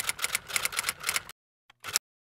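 Typewriter keys clacking in a fast run of keystrokes. After a short pause there is one more keystroke.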